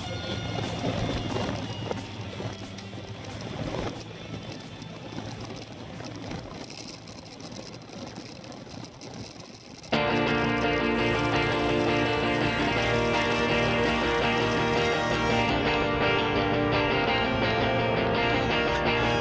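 Background music: a quiet stretch that fades down, then about ten seconds in a loud rock song with electric guitars cuts in suddenly and runs on steadily.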